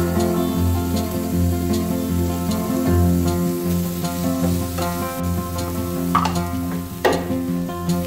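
Sliced onions sizzling in oil in a frying pan as they are stirred with a wooden spatula, with two short louder bursts near the end, under background acoustic guitar music.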